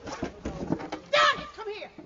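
People's voices without clear words, with a short, loud shriek a little after a second in.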